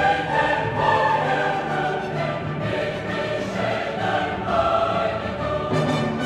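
Background choral music with orchestra: a choir singing slow, held notes.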